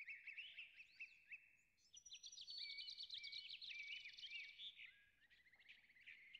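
Faint birdsong: many quick chirps and whistles, busiest between about two and four seconds in, with a couple of fast buzzy trills among them.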